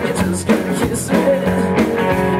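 Live rock-and-roll band playing through a stage PA: two electric guitars, bass guitar and a drum kit, with cymbal hits over steady low bass notes.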